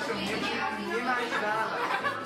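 Several voices talking over one another: indoor chatter.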